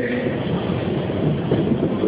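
Steady rumbling room noise of a noisy lecture-hall recording, with no clear voice.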